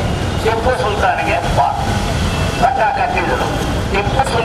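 A man speaking through a handheld microphone, in bursts with short pauses, over a steady low rumble.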